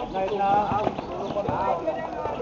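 Young people's voices calling out across an outdoor basketball court, loudest about half a second in, with scattered sharp knocks of a basketball bouncing on asphalt.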